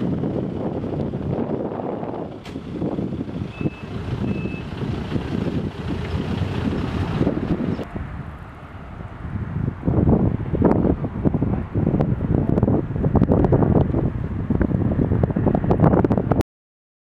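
Rumbling, gusty wind noise on the microphone that grows louder and choppier in the second half, with a reversing alarm beeping twice about three and a half seconds in.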